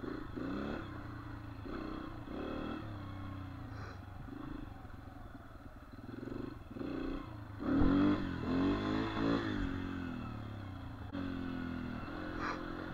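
Dirt bike engine running at low speed along a trail. About eight seconds in it revs up, louder, its pitch rising and falling, then settles back to a steady run.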